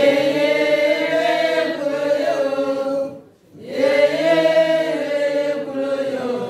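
Women singing a chant without accompaniment: two long, held phrases, with a short break for breath about three seconds in.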